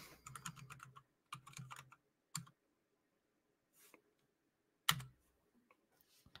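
Faint typing on a computer keyboard: a quick run of light key clicks for the first two and a half seconds, a pause, then a single louder keystroke near the end.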